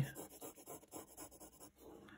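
Faint scratching of a graphite pencil on paper as a curved line is drawn.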